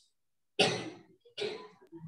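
A person coughing twice, two short harsh coughs a little under a second apart.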